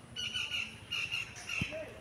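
Faint, repeated high-pitched bird calls in the background, with a soft low thump about one and a half seconds in.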